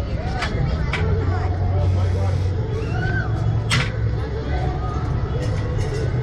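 A steady low mechanical hum with a few sharp clicks, under faint background voices.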